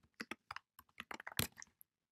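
Computer keyboard being typed on: a quick, uneven run of key clicks, the loudest about one and a half seconds in.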